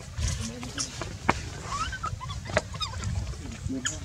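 Short, squeaky calls from a baby macaque, bending up and down in pitch, about two seconds in and again near the end, over a steady low rumble. A few sharp clicks and a quick run of tiny high chirps break in near the middle.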